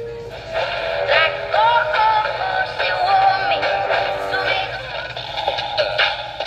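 Coby CR-A67 clock radio's speaker playing a broadcast station: music with a voice singing in gliding, wavering lines. A brief steady tone sounds at the very start, and a low steady hum runs underneath.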